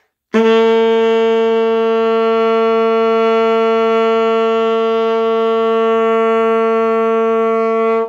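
Alto saxophone holding one long, steady note, a written G (sounding concert B-flat) played as a beginner's long-tone exercise. It starts about a third of a second in, stays even in pitch and loudness for about seven and a half seconds, and cuts off at the end.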